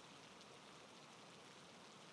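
Near silence, with only a faint, even hiss.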